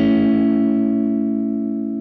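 A Fender electric guitar, clean tone, strums an A major triad on the D, G and B strings once. The chord rings on, slowly fading.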